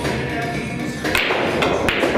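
A pool cue strikes the cue ball with a sharp click about a second in, and pool balls clack together shortly before the end. Music plays in the background.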